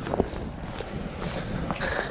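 Footsteps walking on wet pavement over a steady hiss of falling rain.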